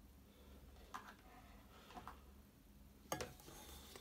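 Near silence: room tone with a low hum, a couple of faint handling sounds, and one sharp knock a little after three seconds in.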